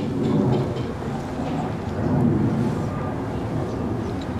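Wind rumbling on the camera's microphone: a steady, dense low rumble.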